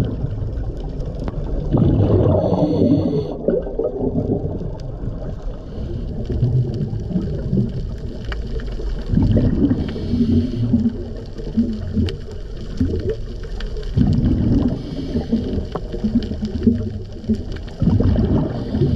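Scuba diver breathing through a regulator underwater: gurgling bursts of exhaled bubbles recur about every four to five seconds over a steady low rumble.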